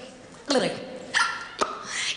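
A woman's short yelping vocal cries, several in a row, each starting sharply and sliding down in pitch, with no music under them: a singer's comic dog-like yelps standing for the character's odd tic.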